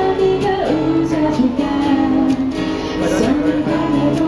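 Live acoustic cover: two acoustic guitars strummed together while a woman sings the melody into a microphone.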